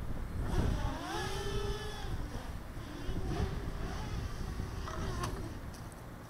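Small quadcopter motors and propellers whining in flight, the pitch gliding up and down with the throttle. Wind buffets the microphone, most strongly in the first second, and there is a brief tick about five seconds in.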